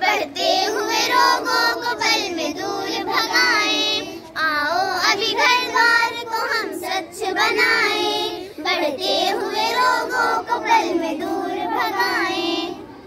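A group of schoolgirls singing a Hindi song together in unison, phrase by phrase with brief breaks for breath.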